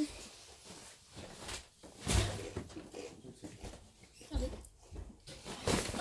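Soft crunching and scattered clicks of someone chewing a crunchy chicken-flavoured snack crisp, with a couple of dull knocks about two and four and a half seconds in.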